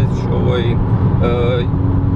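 Inside a Volkswagen Golf 5 GTI cruising at motorway speed: a steady low drone of engine and road noise in the cabin, with a man's voice heard over it. A steady hum joins the drone near the end.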